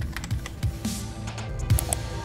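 Computer keyboard typing sound effect, a run of uneven key clicks, over background music.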